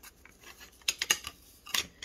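Stacked diamond-painting coasters clacking against each other and the black wire coaster holder as one is lifted out: a cluster of sharp clicks about a second in and another near the end.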